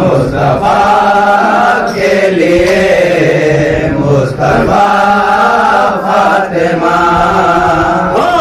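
Wordless vocal chanting of a devotional Urdu praise poem: held, melodic phrases of a second or two, with short breaks between them, over a steady low hum.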